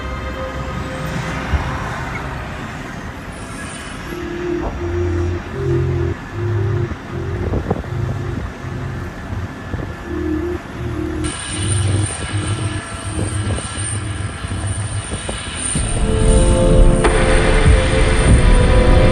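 Dramatic background music with a pulsing low beat that swells louder near the end, with vehicle noise beneath it.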